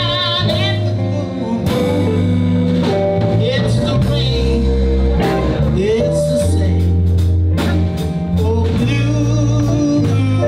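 Live blues band playing: electric guitars, electric keyboard, bass guitar and drum kit together in a steady groove, with some sliding, wavering notes.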